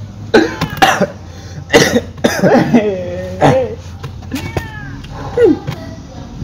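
A man coughing hard, three sharp coughs in the first two seconds, then drawn-out vocal sounds that slide in pitch: coughing from the burn of a hot chilli pepper.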